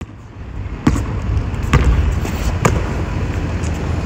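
A basketball bouncing on a concrete court: three sharp bounces a little under a second apart, over a low steady rumble.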